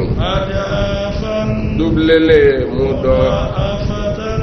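A man chanting Quranic verses in Arabic: melodic recitation with long held notes that slide up and down, with short pauses for breath.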